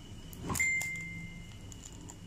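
Crispy deep-fried pork knuckle skin crackling as fingers tear it: a short cluster of sharp cracks about half a second in, followed by a thin, steady high tone lasting about a second.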